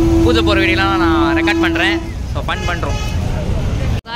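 Busy street traffic of motorbikes and auto-rickshaws, a steady low rumble under many voices, with a long steady tone that stops about halfway.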